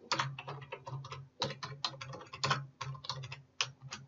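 Typing on a computer keyboard: a quick, uneven run of keystrokes, about six a second, that stops just before the end.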